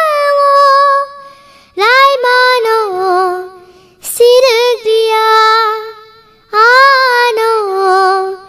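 A child's high voice singing a Kokborok song. A held note fades about a second in, then three short sung phrases follow, about two, four and six and a half seconds in, with brief pauses between them.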